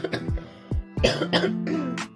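A woman coughing several times, a chesty cough from a cold settled in her chest, over background acoustic guitar music.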